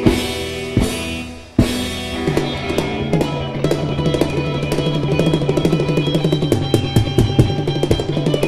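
Live three-piece rock band (electric guitar, bass guitar and drum kit) hitting accented chords together about every second over a held chord. From about two seconds in, the drums break into a fast roll over a sustained guitar and bass chord, the big finish of a song.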